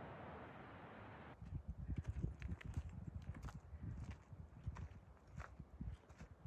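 A steady hiss for just over a second, then a sudden change to irregular footsteps on the trail: uneven low thuds with sharp clicks and crunches.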